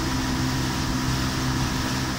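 Evinrude 115 hp outboard motor running steadily at half throttle under way, a constant low drone over the rush of water from the wake.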